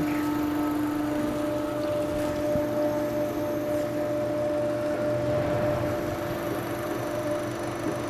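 Waukesha SP stainless steel high-shear positive displacement pump and its electric motor running at a steady low speed with a steady hum, while water from the return hose splashes and churns into a stainless tank as it recirculates.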